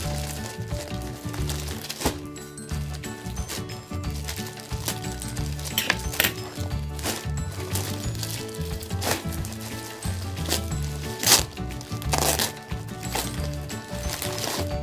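Background music with a repeating bass pattern, over the crinkling of a thin plastic mailer bag being pulled open by hand, with a few sharp rustles, the loudest about eleven seconds in.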